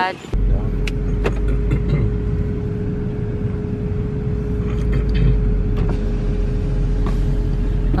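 Inside the cabin of a car driving slowly: a steady low rumble from the engine and road, with a steady hum over it and a few light clicks.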